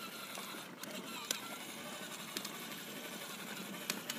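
Battery-powered Yamaha children's ride-on quad running slowly along a concrete sidewalk: a steady, quiet whir of its small electric motor and plastic wheels, with a few faint clicks.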